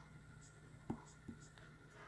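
Stylus tapping and scratching on a tablet's glass screen during handwriting: a few faint ticks, the loudest about a second in, over a low steady hum.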